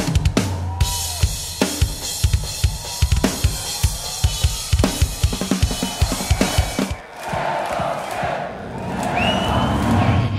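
A Tama drum kit played solo at a live show: fast kick drum strokes under snare and cymbal hits. The drumming stops about seven seconds in, and a crowd cheers and screams.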